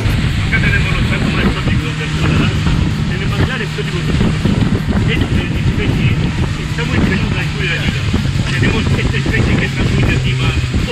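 Motor of a small passenger launch running steadily at speed, a constant low drone mixed with rushing wind and water noise, with a man's voice partly heard over it.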